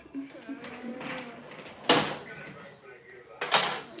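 Two loud, sudden bangs about a second and a half apart, over faint voices in the background.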